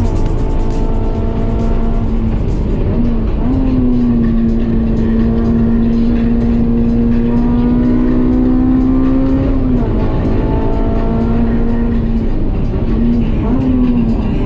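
Honda S2000's 2.2-litre four-cylinder engine with aftermarket header and exhaust, heard from inside the cabin at high revs on track. A steady, loud engine note that dips briefly in pitch about three seconds in and again near ten seconds, then climbs back.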